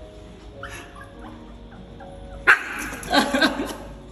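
Chihuahua yapping during rough play: a sharp yap about two and a half seconds in, then a quick run of yaps.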